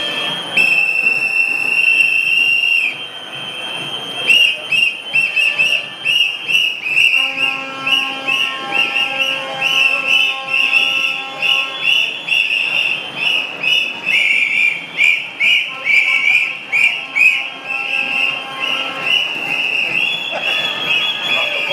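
Whistles blown by marchers in a street demonstration: one long high blast about a second in, then many rapid short blasts repeating for the rest of the time. A lower sustained tone joins in under them in the middle and again near the end.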